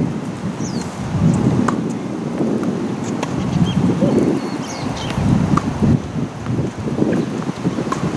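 Wind buffeting the microphone in an uneven low rumble, with a few sharp pops of tennis balls struck by rackets a second or two apart.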